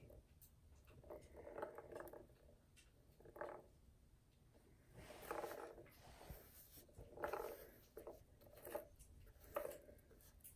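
Faint, intermittent rolling and rubbing sounds in six short spells of a second or less: a small plastic ball pushed around the track of a cat's tiered ball-track toy.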